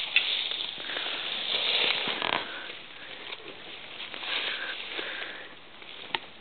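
A horse sniffing at close range, its breath blowing through its nostrils near the microphone, with a long, strong breath about two seconds in and a weaker one past four seconds. A few sharp clicks sound among the breaths.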